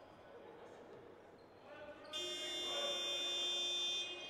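Basketball scoreboard buzzer sounding one steady, shrill tone for about two seconds, starting about halfway through, signalling the end of a timeout.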